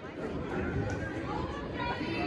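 Indistinct chatter of spectators in a gymnasium, a few voices talking at a low level.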